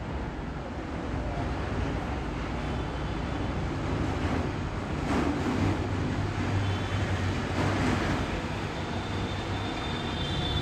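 Steady background noise with a low rumble and no speech.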